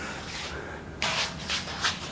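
Shuffling and scraping as a person in work gloves handles a heavy welded steel stand frame, with two short rushes of scraping noise, about a second in and just before the end.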